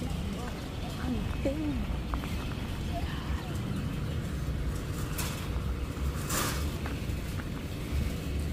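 Outdoor background sound: a steady low rumble with faint voices in the distance, and a brief hiss about six seconds in.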